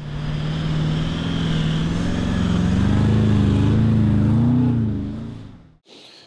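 A four-wheel drive's engine running and revving, its pitch rising and falling. It fades in at the start and fades out near the end.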